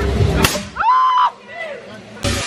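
Inside a scare maze, a sharp whip-like crack about half a second in cuts off a low rumbling din. A short high shriek follows, then a fainter cry.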